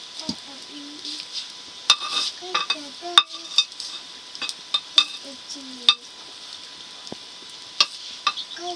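A ladle stirring a thick mash in a metal pot over a wood fire, scraping and knocking sharply against the pot about five times. A steady hiss of the simmering pot and fire runs underneath.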